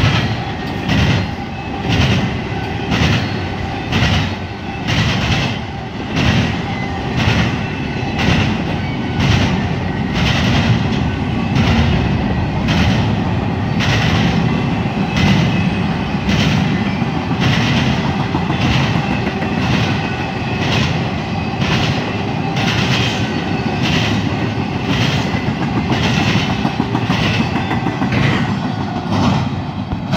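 Double-stack intermodal freight train passing at speed: a steady rolling rumble with a rhythmic clickety-clack of wheels over rail joints, about one clack a second at first and closer together from about ten seconds in.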